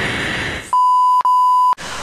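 A steady 1 kHz censor-style bleep tone lasting about a second, broken by a very short gap near its middle. Before it comes a brief rushing noise.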